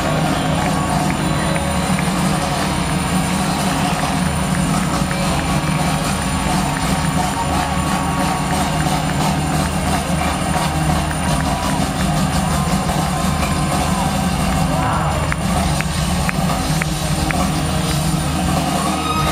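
Live rock band with drums and electric guitar playing at full stadium volume, heard from among the audience with crowd noise mixed in and a steady heavy low rumble.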